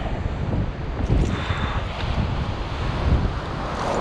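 Wind buffeting the microphone in a steady low rumble, with the wash of breaking surf behind it.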